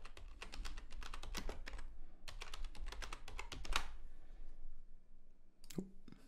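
Typing on a computer keyboard: a quick run of keystrokes for about four seconds, then a pause and a single click near the end.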